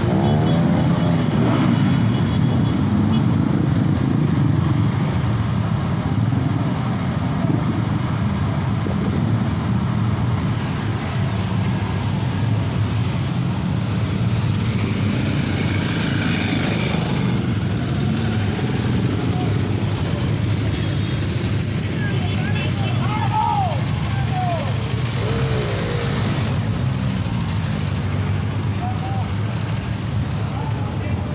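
Many motorcycle engines running together in a steady low rumble as a column of bikes rides past at low speed.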